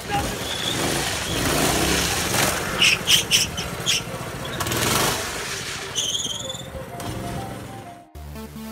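Small gasoline engine on a motorized drift trike running as the trike slides across asphalt, its rear wheels skidding, with a few brief higher squeals around the middle.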